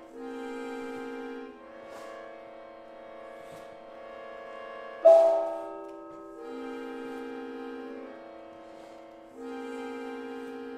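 Sustained, steady chords that shift every second or two. About halfway through, a hanging gong is struck once with a mallet, loud and sudden, and rings out and fades over about a second.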